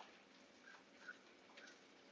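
Near silence: room tone with a few faint small ticks.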